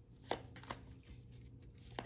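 An oracle card being drawn and laid down among the other cards: a few light, short clicks and taps of card on card.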